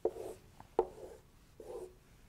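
Whiteboard marker squeaking in short strokes across a whiteboard as terms are written and grid lines drawn, with sharp taps as the pen tip meets the board, twice in the first second.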